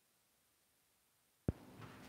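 Near silence: a dead gap with no sound, then a single sharp click about a second and a half in and faint room tone after it.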